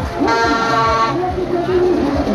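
Loud party music with a thumping bass beat and voices over it. A held, horn-like blast comes in about a quarter second in and lasts most of a second.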